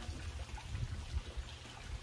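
Faint water trickling into a backyard fish tank, over an irregular low rumble.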